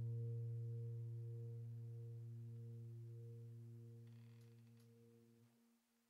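A held low chord from background keyboard music, a deep note with a few higher tones above it, fading slowly and dying away to silence near the end.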